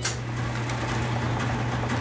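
A machine or engine sound effect starting up and running steadily: a low, even hum with a hiss over it.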